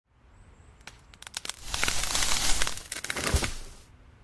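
A burst of crackling and crunching: scattered sharp clicks at first, thickening into a dense crunching noise for about two seconds, then cut off abruptly just before the end.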